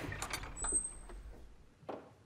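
A wooden door being opened: the latch clicks, the door swings with a low rumble and a brief high squeak, and there is another click near the end.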